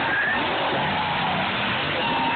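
Monster truck engine running hard as the truck accelerates across the dirt arena, a loud, steady engine sound.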